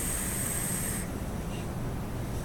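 A rebuildable vape atomizer's coil firing during a draw: a steady high-pitched hiss of e-liquid sizzling on the freshly wicked cotton, with air pulled through the atomizer, cutting off about a second in.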